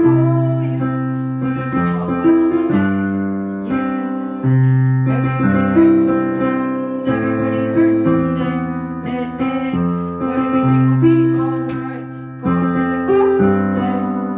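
Digital piano playing a slow chord accompaniment to a pop ballad, with a new chord struck about every one to two seconds and each one left to ring.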